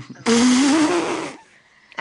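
A man choking and sputtering on a strong drink: one harsh, breathy vocal burst about a second long.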